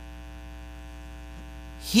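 Steady electrical mains hum, a low buzz made of many even steady tones, picked up through the sound system; a man's voice cuts in right at the end.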